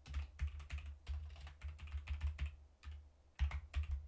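Typing on a computer keyboard: irregular keystrokes, each with a low thud, a short pause about three seconds in, then a quick run of keystrokes near the end.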